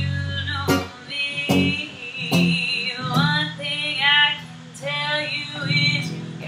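Solid-body electric guitar through a small combo amp playing a repeated low riff. About halfway through, a woman's singing voice joins it, sliding between notes.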